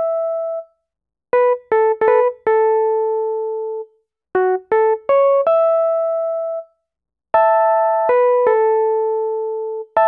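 A Wurlitzer Classic electric piano, GarageBand's built-in patch, plays a solo single-note melody at 80 BPM. It comes in phrases of a few quick notes, each ending on a long held note that fades, with short silences between the phrases.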